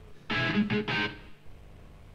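A short burst of electric guitar: three quick strummed chords within about a second, then it stops.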